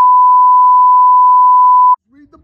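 Censor bleep: one loud, steady electronic beep at a single pitch that drowns out all other sound and cuts off sharply just before the end.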